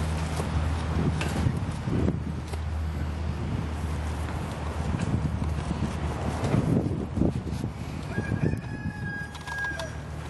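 Rustling and scattered light knocks of rabbits moving in a hutch, over a steady low hum. Near the end comes a single steady high bird call of about a second and a half.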